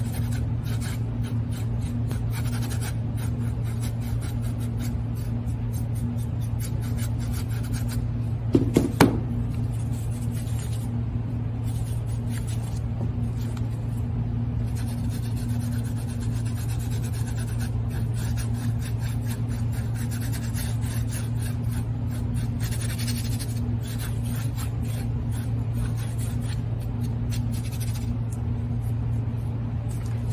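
Paintbrush scrubbing acrylic paint onto a canvas in rubbing strokes, over a steady low hum. A brief knock comes about nine seconds in.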